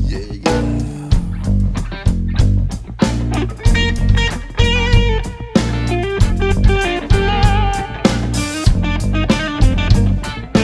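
Southern rock band playing an instrumental passage: electric guitars over bass guitar and a steady drum beat.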